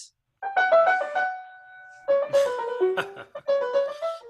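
Piano playing two short phrases of quick notes: the first begins about half a second in and ends on a held note that dies away, the second starts about two seconds in.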